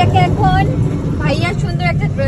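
Steady low drone of an auto-rickshaw's engine, heard from inside the passenger cage under people talking.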